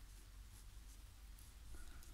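Faint scratching of a fountain pen nib drawing short strokes on textured watercolour paper.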